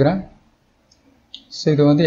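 A man's narrating voice that pauses and resumes, with two short computer-mouse clicks in the pause about a second in, the second one louder.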